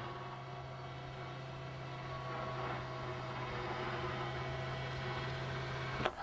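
Electric motor of a tilting RV bed running steadily while the wall switch is held, a low, even hum that grows slightly louder as the bed moves.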